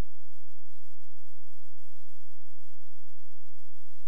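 Steady low electrical hum with irregular soft low thumps, several a second: the idle noise on a DVD player/VCR's audio line with nothing playing.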